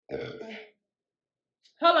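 A person's short, low, rough vocal sound, about half a second long, in the first second.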